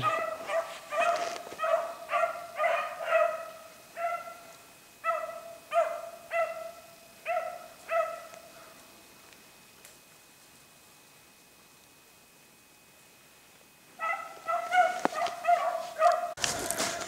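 Rabbit-hunting hounds baying as they run a rabbit's scent trail, in short repeated calls about two a second. The calls stop for several seconds and start again near the end.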